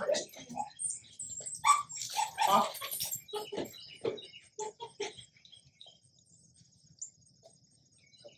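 A young black dog making short vocal sounds, mixed with a few quiet words, for about the first five seconds; after that only a faint steady high-pitched drone remains.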